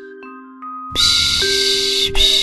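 Slow lullaby of soft bell-like chiming tones with a long breathy "shh" shushing sound over it. The shush is absent at first while only the chimes sound, and comes back strongly about a second in.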